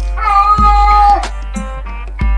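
A ginger cat meowing once, a long call that drops in pitch at the end, over background music with a steady bass beat.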